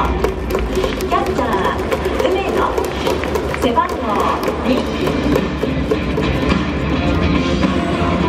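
Stadium public-address music echoing through a large dome, over a steady low rumble and crowd sound, with many scattered sharp claps.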